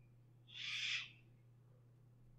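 A short, breathy puff of air near the microphone, about half a second long, like a person breathing out, over a faint steady low hum.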